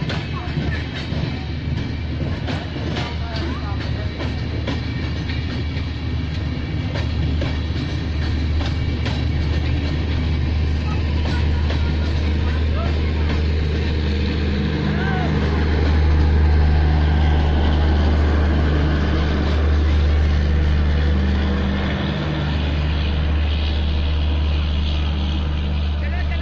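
Passenger coaches of an express train rolling past at speed: a steady low rumble of steel wheels on rail, with clicks as the wheels cross rail joints. It grows louder about halfway through.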